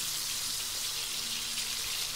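Chicken pieces frying in a wok in their own rendered fat, a steady sizzling hiss, as they are stirred with a wooden spatula.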